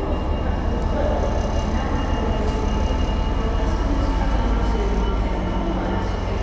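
Locomotive hauling a freight train slowly past, a steady low rumble of the engine and wheels on the rails.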